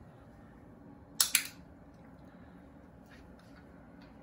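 Dog-training clicker pressed and released about a second in, a sharp double click that marks the puppy's sit; otherwise quiet room tone.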